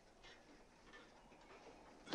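Near silence: a faint hush with a few scattered light ticks.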